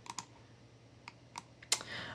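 Sparse clicks from a computer mouse and keyboard: about five short clicks over two seconds, the loudest near the end.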